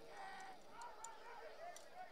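Faint voices murmuring in the background, distant talk under an otherwise quiet broadcast microphone, with a few faint clicks.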